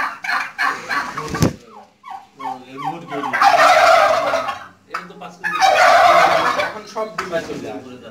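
Domestic turkeys gobbling, with two long, loud gobbles in the middle, each lasting over a second.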